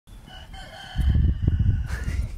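A rooster crowing: one held call that fades out about a second in, followed by a louder low rumble.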